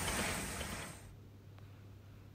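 Soft steam hiss from a live-steam 3½-inch gauge Britannia model locomotive, fading out within about a second to near silence with a faint low hum.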